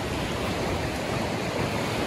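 Ocean surf washing onto the beach: a steady wash of noise with no distinct breaks.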